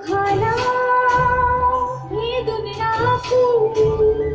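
A large mass choir singing in unison over musical accompaniment, holding long notes that slide between pitches, with regular percussion hits.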